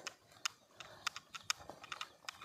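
Footsteps walking on a dirt path, a crisp step about every half second.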